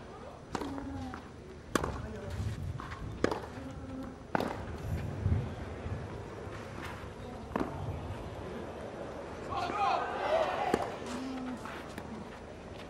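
Tennis rally on a clay court: a serve and then a series of sharp racket-on-ball pops, one to three seconds apart. Voices rise briefly from the stands near the end.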